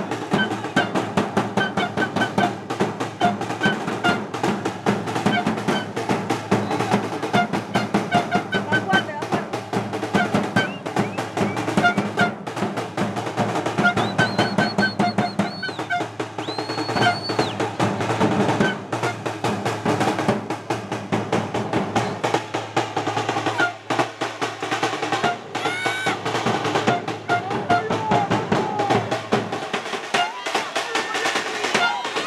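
Supporters' drums, including a large bass drum, beaten in a fast continuous rhythm with crowd voices chanting over them. Two long high-pitched tones sound about halfway through, and another near the end.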